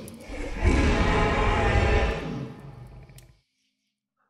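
A loud, roar-like sound effect with a deep rumble, swelling about half a second in and fading away by about three and a half seconds.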